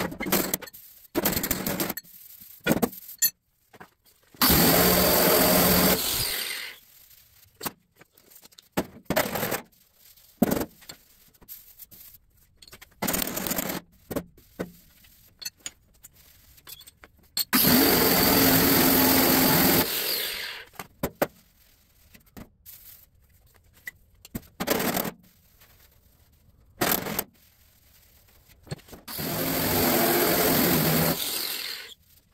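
Angle grinder spinning a large steel shrinking disc against the stretched sheet-steel fender, run in bursts: two of about two seconds, another starting near the end, and several short blips between, with quiet pauses. The disc's friction heats the high spots so the stretched metal shrinks.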